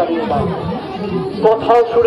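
Crowd chatter: many voices talking at once, with a nearer voice coming through more clearly near the end.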